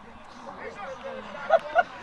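Faint distant voices on an outdoor football pitch, with two short shouts about one and a half seconds in.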